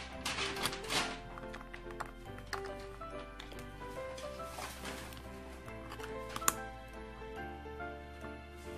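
Background music: sustained keyboard-like notes over a bass line that changes every second or two, with one sharp click about six and a half seconds in.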